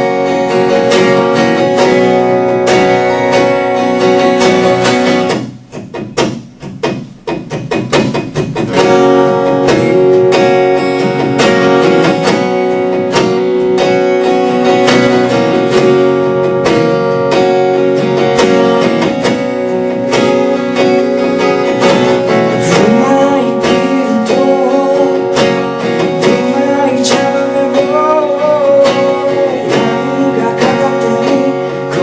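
Acoustic guitar and harmonica played live over looper-recorded layers, with long held tones sounding underneath. About six seconds in it thins to a few separate plucked notes for a couple of seconds, then the full texture comes back, and a wavering melody line rides over it in the last several seconds.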